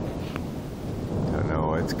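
Low, continuous rumble of distant rolling thunder from an approaching thunderstorm. A voice starts over it near the end.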